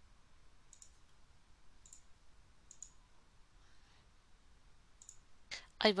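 Faint computer mouse clicks: four single clicks, roughly a second apart with a longer gap before the last.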